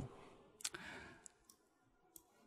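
Near silence broken by a faint computer mouse click about two-thirds of a second in, then a couple of fainter ticks.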